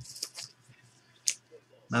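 A thick trading card being handled by fingers: a few faint rustles and light taps, then one sharp click a little after a second in.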